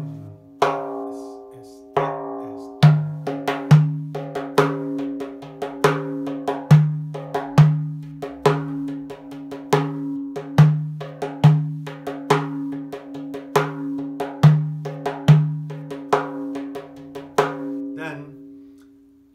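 Frame drum played by hand in a 9/8 Karşılama rhythm grouped 2-2-3-2, with the deep doum bass strokes stacked at the start of each cycle and lighter tek finger strokes filling the back end. The deep strokes ring on between hits.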